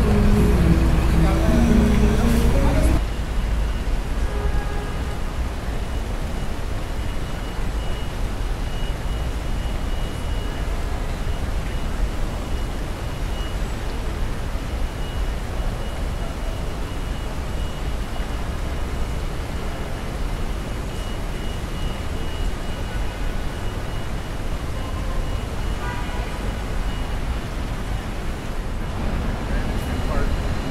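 City street ambience: traffic rumble and the voices of passers-by, dropping suddenly about three seconds in to a quieter, steady hum of distant traffic with faint voices.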